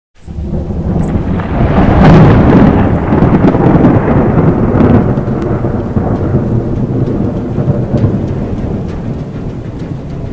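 Thunderstorm sound effect: rolling thunder over rain, swelling loudest about two seconds in, swelling again around five seconds, then slowly dying away.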